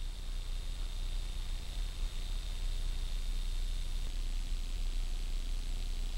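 Steady low hiss with a faint low hum beneath it, and no distinct event.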